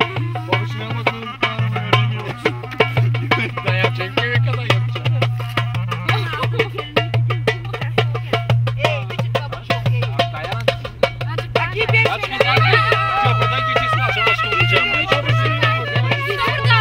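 Balkan folk wedding music played by a band: a clarinet melody over a steady drum beat, the melody growing louder and more sustained about twelve seconds in.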